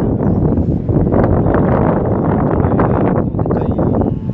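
Wind buffeting the camera microphone, a loud, steady, low noise.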